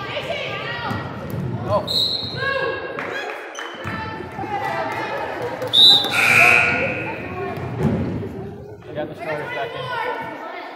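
Gym noise during a girls' basketball game: players' and spectators' voices echoing in the hall, a basketball bouncing on the hardwood court, and short high squeaks, most likely sneakers on the floor, the loudest about six seconds in.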